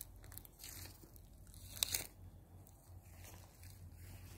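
Faint rustling and soft clicks from a phone being handled and swung while filming, with a sharper click about two seconds in.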